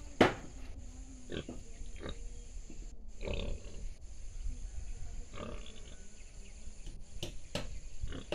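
Rural outdoor ambience: a steady high insect drone under low rumble, with a few short animal grunts and scattered knocks.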